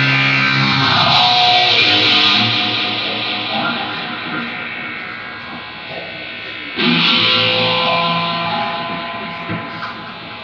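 Distorted electric guitar: a chord rings and slowly fades, then a new chord is struck about seven seconds in and rings out, fading toward the end.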